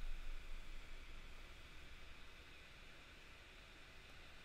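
Faint room tone: a steady low hiss with no distinct sound, fading slightly quieter toward the end.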